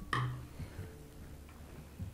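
Quiet handling of a cotton cord and a wooden bead by hand: faint rustling and a few light ticks, with a brief soft sound just after the start.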